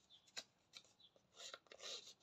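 Handheld paper distresser scraped along the edge of a strip of cardstock, fraying it for an aged look: a few faint, short scratchy strokes with one sharper click.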